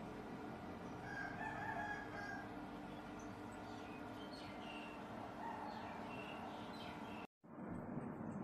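SMARTHOME AP-180 air purifier fan running steadily with a faint hum. A rooster crows faintly about a second in, and small bird chirps follow.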